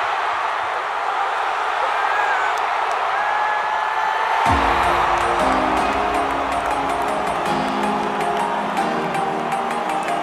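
Stadium crowd noise, cheering, for the first half; about halfway through, music comes in with a deep bass hit, then steady held chords over a ticking beat.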